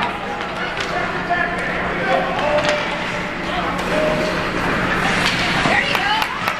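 Ice hockey rink ambience: spectators talking in fragments, with occasional sharp clacks of sticks and puck on the ice over a steady low hum.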